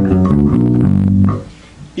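Tagima electric bass guitar playing a short improvised run of about five single notes from the scale, each a different pitch, stopping about a second and a half in.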